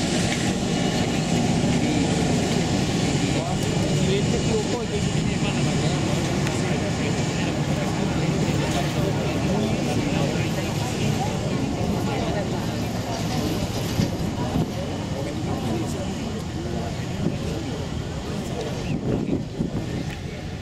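Steady rumble of a jet airliner's engines as it taxis, mixed with wind on the microphone and indistinct voices.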